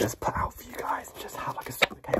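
A man whispering close to the microphone, with one sharp click near the end.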